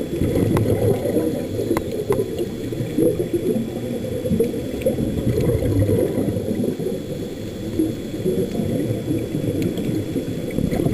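Muffled underwater rumble and gurgling from scuba divers' exhaust bubbles, with a few faint clicks in the first couple of seconds.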